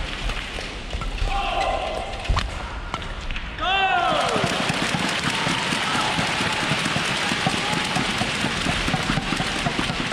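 Badminton rally in a packed arena: a sharp racket hit on the shuttle a little after two seconds in. About a second later the point ends and a loud falling shout rises out of the crowd, which then goes on cheering and clapping steadily.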